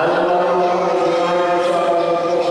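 A man's voice chanting one long note, steady in pitch, starting suddenly and held throughout.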